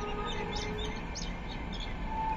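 Small birds chirping in the background: a few short, high chirps scattered through the moment over a faint steady hum.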